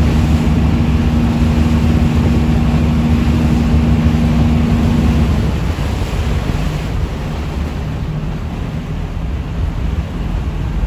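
Boat engine running with a steady low hum that cuts off about halfway through, over wind buffeting the microphone and the wash of water.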